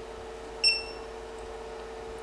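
A Creality CR-10 SE printer's touchscreen gives one short beep about two-thirds of a second in as its on-screen button is tapped. Under it runs the steady hum of the printer's power supply fan, which is a little loud.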